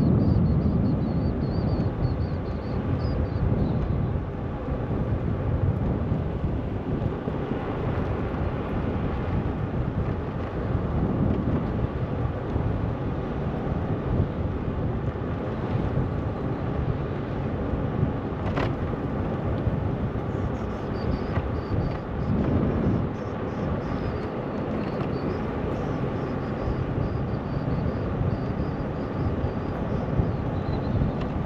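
Steady wind rushing over the microphone with rolling road rumble while riding along a paved cycle path, with a single sharp click about two-thirds of the way through.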